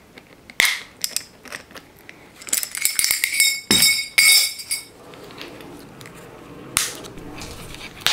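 Small metal bell on a bird's rope perch clinking and ringing as it is handled and cut off with diagonal cutters. There are several sharp metal clicks, and from about a third of the way in a ringing of several clear high tones lasts a couple of seconds.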